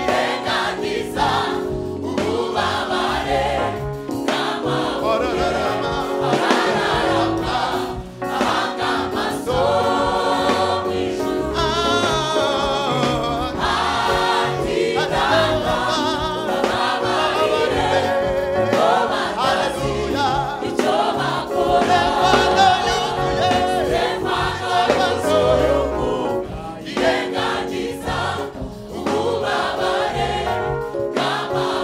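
A mixed choir of women's and men's voices singing a Rwandan gospel song together into microphones, in full voice for the whole stretch.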